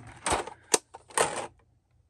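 A hinged metal storage tin being closed and handled: a few sharp clicks in the first second, then a short clatter, with quiet near the end.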